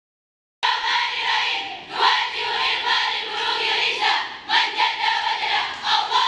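A large group of girls chanting a class cheer together, loud and in unison. It starts suddenly about half a second in and runs in phrases with short breaks.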